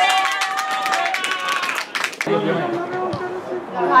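Shouting voices of players and spectators at an outdoor football match: a long held call at first, with scattered sharp knocks, then more voices after a sudden change in the sound about two seconds in.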